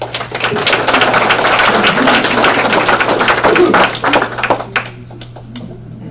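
Audience applauding: many hands clapping, swelling quickly, holding for about four seconds, then dying away to a few last claps near the end.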